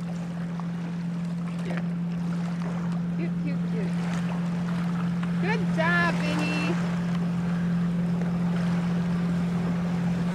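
Steady low drone of a boat motor running, with wind and water noise, and a child's brief high-pitched voice about six seconds in.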